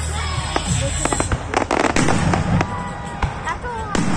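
Fireworks going off: sharp bangs of aerial shells bursting, with a quick run of crackling bangs about a second and a half in.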